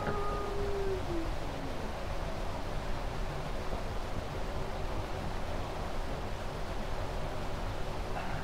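Steady hiss and background noise of a gain-boosted 1951 field tape recording, with no singing or speech. A faint tone glides down and fades out in the first second and a half.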